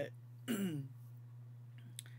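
A woman clearing her throat once, briefly, about half a second in, with a falling pitch.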